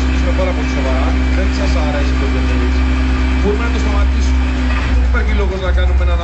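Loud music played through a car's tuned sound system, with deep, constant bass and a singing or talking voice over it.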